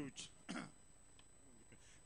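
A short throat-clear into a handheld microphone about half a second in; otherwise near silence.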